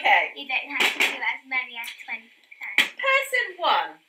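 People talking, with a couple of sharp slaps about one and three seconds in.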